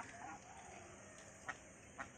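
Flock of domestic ducks calling faintly, with a few short sharp calls about a second and a half in and again at the end.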